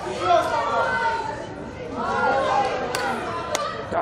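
Several voices shouting and calling out over one another, with two sharp knocks about three and three and a half seconds in.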